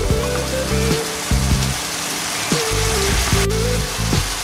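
Diced chicken, ham, onion and mushrooms frying in a pan with a steady sizzling hiss, under background music.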